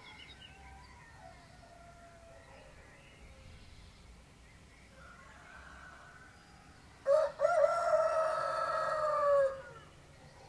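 Faint songbirds chirping, then about seven seconds in a rooster crows once, a loud call of about two and a half seconds that drops in pitch at the end.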